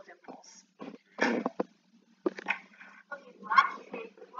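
Brief, indistinct snatches of a voice, not clear words, in short separate bursts about a second in and again near the end.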